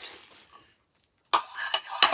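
Plastic wrapping rustling and metal camp cookware pieces clinking together as they are unwrapped, starting suddenly a little past halfway after a brief silence.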